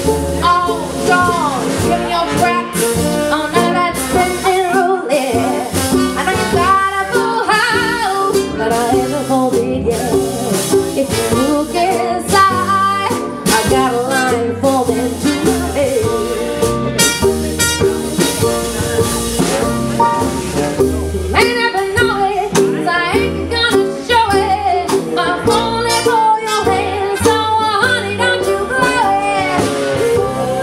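Live roots band playing an instrumental passage with no singing words: trumpet and trombone lead over mandolin, electric guitar, upright bass and drums.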